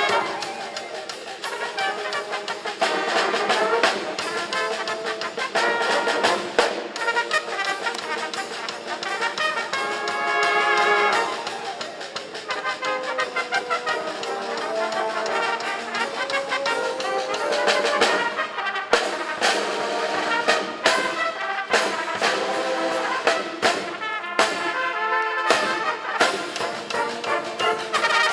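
A small ensemble of trumpets playing together in harmony, holding chords at times. From about two-thirds of the way in, the notes turn short and sharply attacked.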